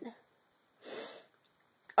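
A woman's short breath in, lasting under half a second, about a second in.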